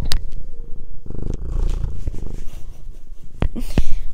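Domestic cat purring right into a clip-on lavalier microphone held up to it, strongest from about a second in and fading after about two seconds. Sharp knocks from the mic being handled and rubbed by the cat come through several times.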